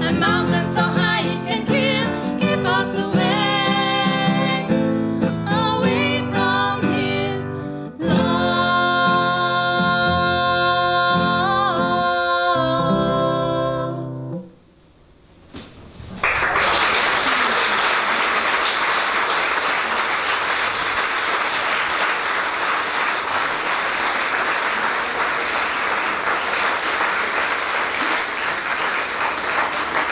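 Nylon-string classical guitar and violin play the closing bars of a piece, ending on a held, wavering note about fourteen seconds in. After a brief pause an audience applauds steadily.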